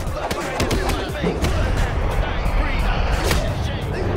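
Movie fight-scene soundtrack: driving music under a series of sharp punch and kick impact sounds, with shouting voices mixed in.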